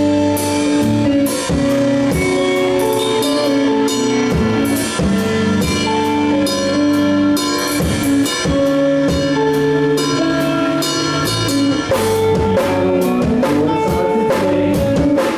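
Live rock band playing: distorted electric guitars holding chords and notes over a drum kit keeping a steady beat with crashing cymbals, about two strikes a second.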